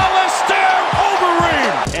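Background music with repeated falling synth tones, about two a second, over a dense wash of sound.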